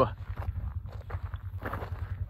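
Footsteps on a rocky dirt trail, an irregular run of light steps, over a steady low rumble.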